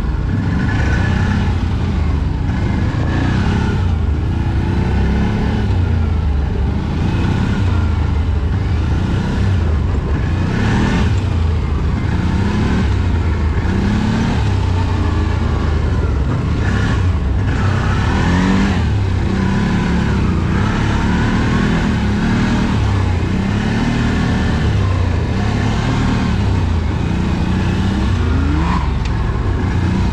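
Off-road vehicle engine running continuously over a rough trail, its pitch rising and falling every second or two as the throttle is worked.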